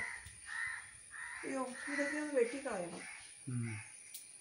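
Crow cawing several times outdoors, with a person speaking quietly in between.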